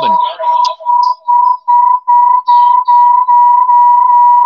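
Audio feedback on a video-call live stream: a loud, steady, high whistling tone. It starts as pulses about three a second, the gaps closing until it becomes one unbroken whistle. It is a feedback loop that the host traces to his own end, where the stream also plays through the church.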